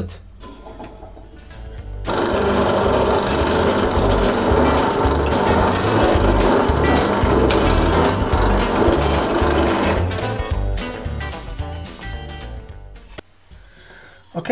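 Benchtop drill press running, with a nail chucked in place of a drill bit boring a small hole in a wooden block. It starts suddenly, runs steadily, then winds down over a few seconds near the end.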